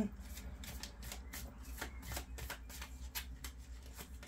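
Deck of oracle cards shuffled by hand: a quick, irregular run of light card flicks and slaps, several a second.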